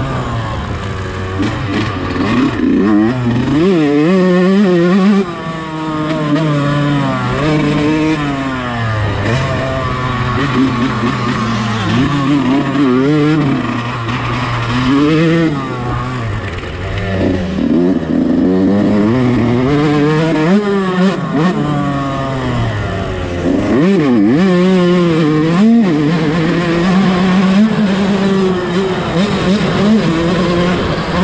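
A 125-class motocross bike's engine racing at high revs, its pitch climbing and dropping over and over as the rider accelerates and rolls off around the track.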